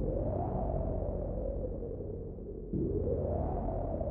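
Dark trap instrumental beat: a synth swell rises and fades over steady low bass, then swells again near three seconds in.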